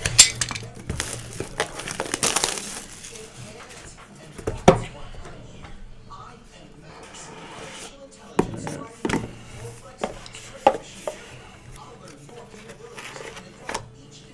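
A sealed cardboard trading-card hobby box being opened by hand. Its wrapping crinkles in the first few seconds, then scattered sharp knocks and clicks of cardboard and plastic follow as the box is pulled apart and its contents handled.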